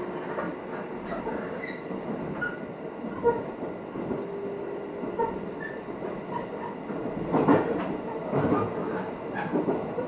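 Interior of an electric commuter train running along the line: a steady rumble of wheels on rail, with faint short squeaks from the wheels. There are a few louder knocks about seven and a half and eight and a half seconds in.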